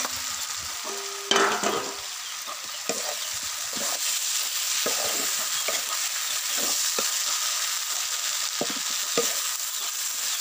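Pork and taro frying in a black wok over a wood fire, sizzling steadily while being stirred, with a spatula scraping the pan in short, irregular strokes and one louder clatter about a second and a half in.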